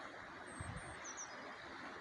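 A small bird chirping a few short, high calls over a steady, faint outdoor hiss.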